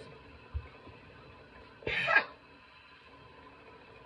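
A single short, sharp burst of breath from a person, about two seconds in, against quiet room tone.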